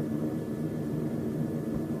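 Steady drone of a multi-engine propeller aircraft's piston engines, heard from inside the cockpit.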